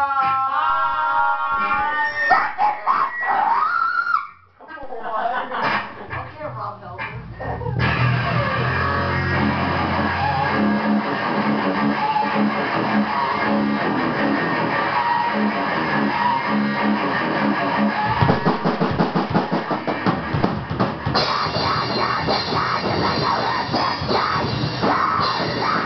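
A few seconds of voices and stray notes, then a garage metal band of electric guitar, bass guitar and drum kit starts playing loud and distorted about eight seconds in. The music thins out in the low end for a few seconds past the middle, then builds again.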